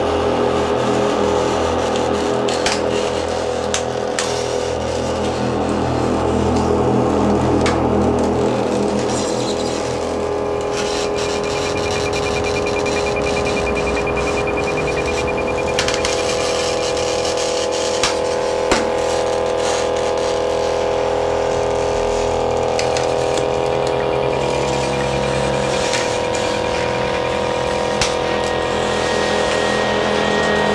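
Experimental electronic music built from synthesizers and field recordings: sustained drone tones over a low rumble, with scattered sharp clicks. A thin high tone comes in about a third of the way through and drops out later.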